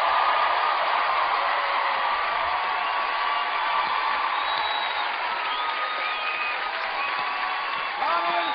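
Studio audience applauding and cheering, with a few whoops over the clapping, slowly dying down.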